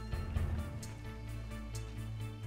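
Background music with a steady beat: held notes over a bass line and an even ticking rhythm. A brief low rumble sits under it about half a second in.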